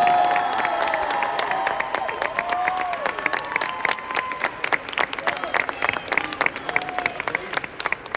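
Audience applauding, with sharp hand claps close by. Voices shout and cheer over the first few seconds.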